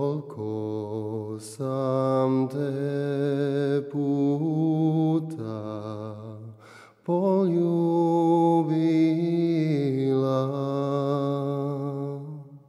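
Male voice singing a slow sevdah melody in long held, ornamented notes with vibrato, without clear words. There is a short break for breath a little past halfway, then one long sustained line.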